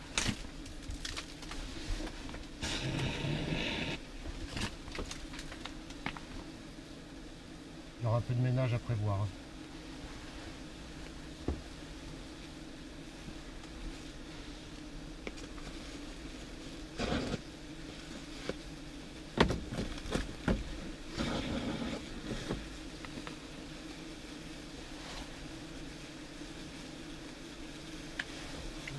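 A swarm of German wasps (Vespula germanica) buzzing steadily around a disturbed nest, with a few brief rustles and knocks breaking in.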